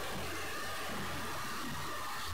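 Steady background hiss with a low hum, unchanging throughout: the recording's noise floor in a pause of the reading.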